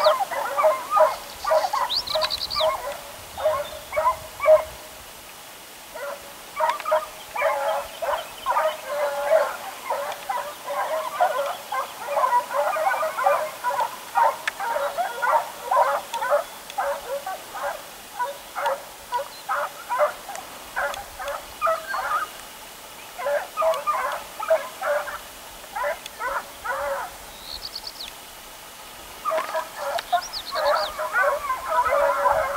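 Distant hare hounds baying in quick, overlapping yelps as they work the scent trail the hare left, with a few short lulls.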